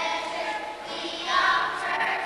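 A children's choir singing together.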